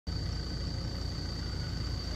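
Steady low rumble of an idling engine, with a thin steady high whine over it.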